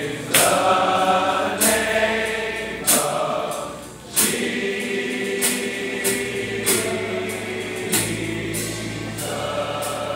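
Congregation singing a gospel song, many voices together, over a strong beat that lands about every second and a quarter.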